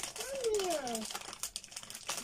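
Plastic sweets bag crinkling and rustling in quick small clicks as hands reach in to take sweets. A voice makes a short sound falling in pitch about half a second in.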